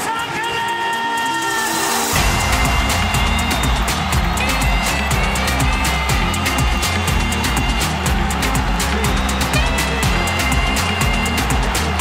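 Background music: a track whose deep bass beat comes in about two seconds in, over fast ticking percussion and held synth tones.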